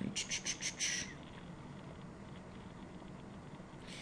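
A quick run of about six short, high-pitched clicks or chirps in the first second, then faint room tone.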